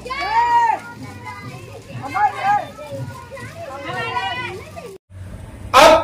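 Children's voices calling out loudly, three high-pitched shouted calls about two seconds apart. Near the end it cuts off and a man starts speaking.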